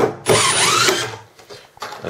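Cordless impact driver driving a Beaverscrews wood screw into timber. One short burst of motor and thread noise, a brief break, then a second, longer run that stops about a second in as the screw seats.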